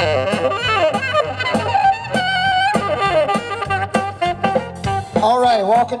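Live band playing with a saxophone leading, its long notes wavering with vibrato, over drums, bass and electric guitar. A man's voice starts speaking over the music near the end.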